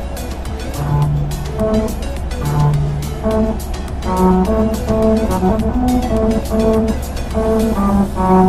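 Car tyres rolling over a musical road, where grooves cut in the asphalt turn the tyre noise into a tune of separate held notes over the steady rumble of the car.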